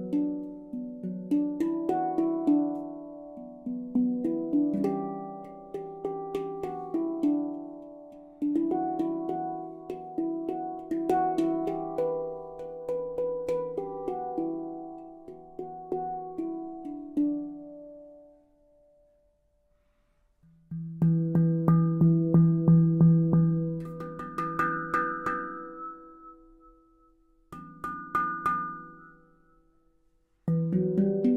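Handpan in the E Low Sirena scale, played with the hands: ringing struck notes in flowing phrases. A little past halfway the notes die away to near silence, then a fast run of rapid repeated strikes on the low and middle notes builds and fades, and a short last phrase rings out near the end.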